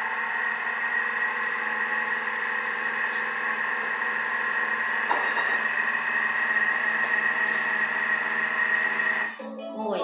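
Thermomix food processor motor running at speed 2 with the butterfly whisk fitted, mixing flour and cocoa into brownie batter. It makes a steady whine at one constant pitch and stops about nine seconds in, as the 10-second program ends.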